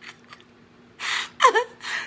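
A woman draws a sharp, breathy gasp about a second in, then starts to laugh.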